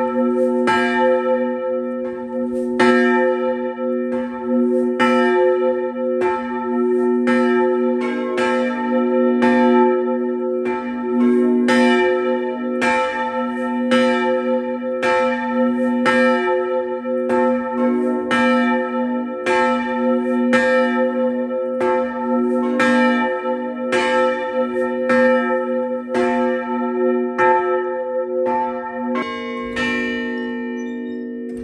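Church bells ringing in a steady, even rhythm, about one stroke every 0.7 s, each stroke ringing on into the next. The strokes stop near the end and the bells go on humming.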